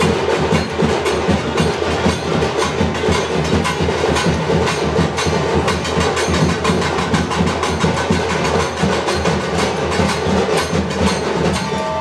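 Music of fast, continuous drumming and percussion, with dense strikes that run on without a break.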